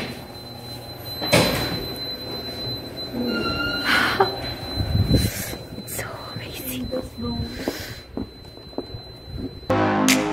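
Glass entrance door pushed open and swinging shut, with a thunk about one and a half seconds in. A steady high tone runs behind, and music cuts in just before the end.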